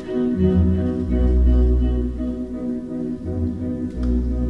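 Instrumental accompaniment playing held chords over a low bass line, the bass changing notes about a second in and again near the end.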